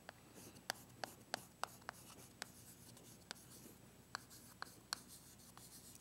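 Chalk writing on a chalkboard: a string of short, irregularly spaced taps and light scratches as the chalk strikes and drags across the board to form letters.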